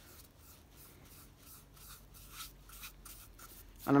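Paintbrush bristles brushing coffee stain around the rim of an oak bowl: a run of faint, soft strokes.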